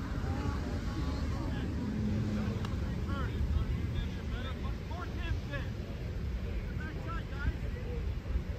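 Wind rumbling on the microphone, with scattered distant shouts and calls from players and spectators across a soccer field.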